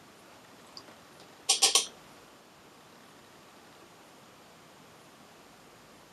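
A quick run of three or four light clicks, likely from a makeup brush and a small pot of loose pigment being handled, about a second and a half in, over quiet room tone.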